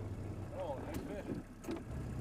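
A steady low engine hum, with faint brief voices and a couple of small clicks over it.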